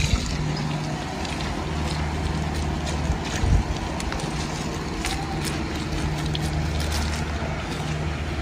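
Water running from a garden hose and splashing onto loose soil around young plants, over a steady low hum.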